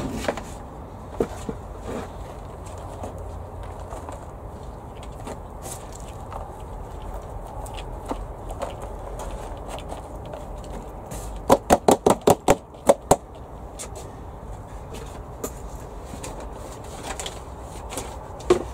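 Hands spreading and working potting compost in a large plastic planter: soft scraping and rustling. A quick run of about eight sharp knocks comes a little past the middle.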